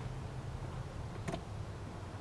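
Quiet, steady low hum with one faint click a little past the middle.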